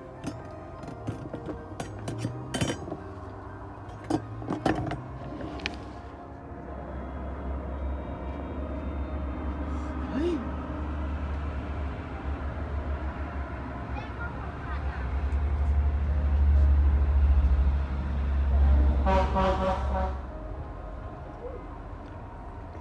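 A few sharp taps and clicks in the first few seconds, then the low rumble of a motor vehicle that swells over about fourteen seconds and stops. A short horn toot comes near its loudest point.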